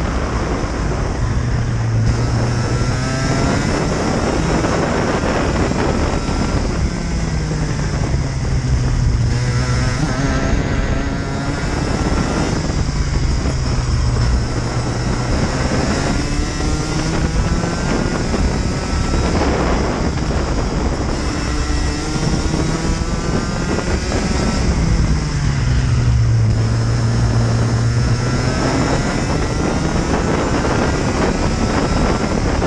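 Rotax Max Junior kart's 125 cc single-cylinder two-stroke engine at racing speed, heard from the kart itself. The revs climb along each straight and drop sharply into the corners, several times over. Wind buffets the microphone throughout.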